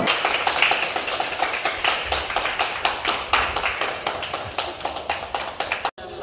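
Hands clapping in a quick, steady rhythm, about five claps a second, cutting off abruptly near the end.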